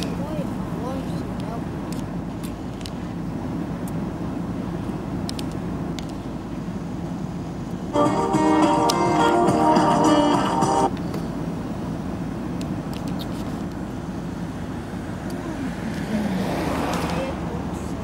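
A steady low outdoor rumble, like distant traffic, runs throughout. About eight seconds in, a loud added clip of a voice calling "Подпишись!" ("Subscribe!") with music starts abruptly and cuts off after about three seconds. Near the end, a broad swell of noise rises and fades.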